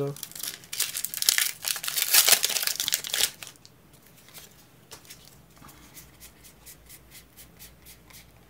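A foil Pokémon booster pack wrapper being torn open and crinkled, loudly for about three seconds. Near the end come soft quick ticks as the trading cards are flicked through one by one.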